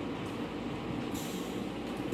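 Steady low mechanical hum, with a short rustle about a second in as the bandage material is handled.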